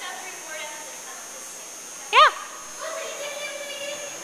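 Mostly speech: a woman's short, high-pitched "yeah" of praise about two seconds in, with fainter voices before and after it.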